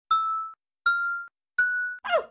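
Three bell-like chime dings about three-quarters of a second apart, each struck sharply and ringing briefly on one clear tone, each a little higher in pitch than the last: an intro sting.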